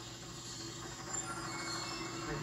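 Film soundtrack of a speedboat chase: boat engines droning steadily under the musical score, heard through a television speaker.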